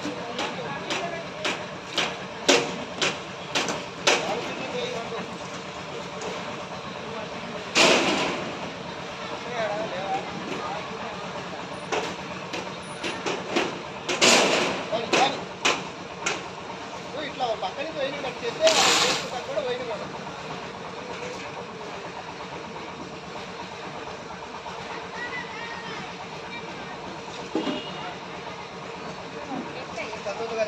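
Hand pouring of concrete into plinth-beam formwork: a run of sharp knocks from iron pans and tools early on, then several louder rushes of about a second as pans of wet concrete are tipped into the form, with workers' voices throughout.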